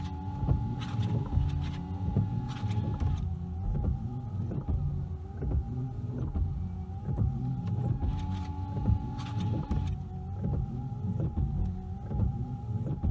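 Windscreen wipers of a 2019 Opel Corsa running on freshly fitted Martigues blades, heard from inside the cabin: a steady electric wiper-motor whine with repeated knocks as the blades sweep back and forth across the glass.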